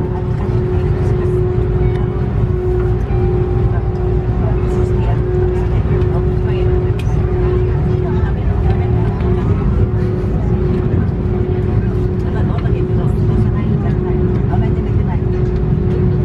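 Airliner cabin noise: a steady low rumble with a constant hum running unchanged throughout.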